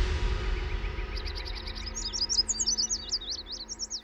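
Birds chirping: a fast, even run of short high chirps begins about a second in, then gives way to quicker, varied chirps that rise and fall. Background music with low held notes fades out underneath.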